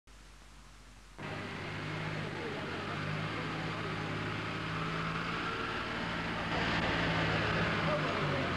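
Street background noise: a motor running steadily, with indistinct voices mixed in. A faint low electrical hum comes first, and the street sound starts suddenly after about a second.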